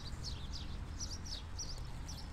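Small songbirds chirping in the background: a quick string of short, high, falling chirps over a low, steady outdoor hum.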